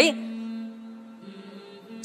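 Soft background music: a steady held drone-like tone, with a second higher note joining about halfway through.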